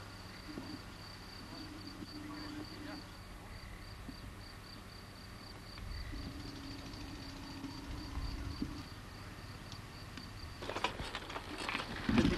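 A cricket chirping steadily, about three short high chirps a second, over faint outdoor background with a low hum that comes and goes. Voices start near the end.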